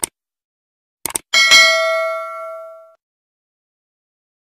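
Subscribe-button animation sound effects: a sharp click, two quick clicks about a second later, then a bright bell ding that rings out and fades over about a second and a half.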